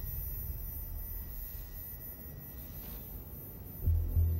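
A quiet, steady low rumble from the playing TV episode's soundtrack, with no speech or clear music.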